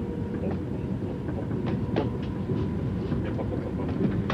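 Passenger train running, heard from inside the carriage: a steady low rumble with a few light clicks.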